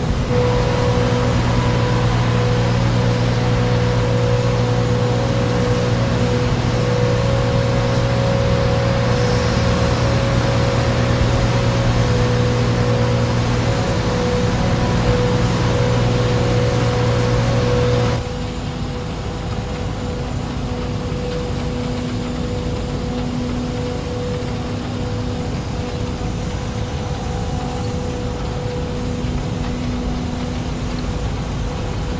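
Steady mechanical drone with several held hum tones over a rushing noise, as of engines or heavy machinery running. About eighteen seconds in it cuts abruptly to a quieter drone of the same kind.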